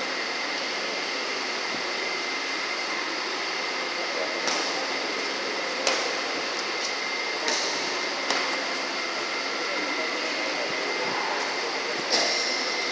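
Badminton rally: four sharp racket strikes on the shuttlecock, the first about four and a half seconds in and the last a little after eight seconds, over steady fan noise with a faint high tone.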